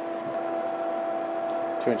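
A steady hum made of two pitched tones over a light hiss, holding unchanged; a man's voice starts just before the end.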